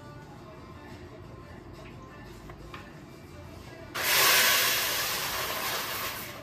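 Coffee beans poured from a bag into a coffee grinder's hopper: a sudden rushing rattle starts about four seconds in and tails off over the next two seconds.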